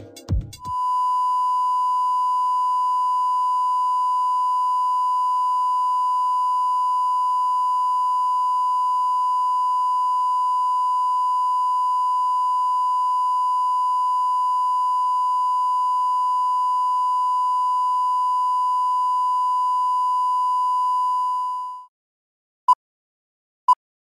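Steady 1 kHz reference test tone of the kind that goes with broadcast colour bars: one unchanging pure pitch. It starts just under a second in, as the intro music ends, and cuts off just before the end.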